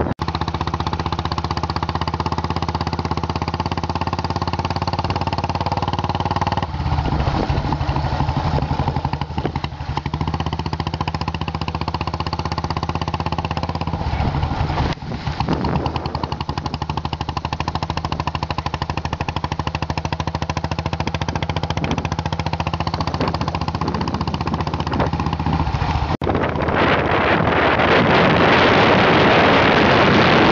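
Royal Enfield single-cylinder motorcycle engine running under way, its pitch shifting a few times as the speed changes. Near the end, wind rushing over the microphone grows louder and covers it.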